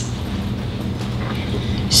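A pause in speech filled by steady background noise: a low hum with an even hiss.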